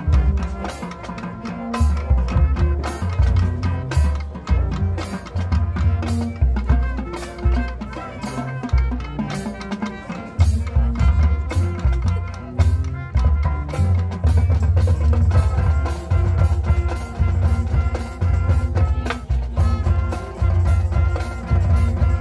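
High school marching band playing its field show: brass and marching percussion with a front ensemble, driven by a steady pattern of drum hits over low brass notes.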